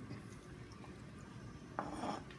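Quiet room tone, with one brief knock near the end.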